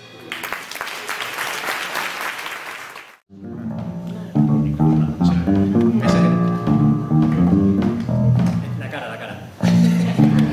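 Audience applauding, cut off abruptly about three seconds in. Then a solo electric bass guitar plays a run of plucked notes, some sounded together as chords.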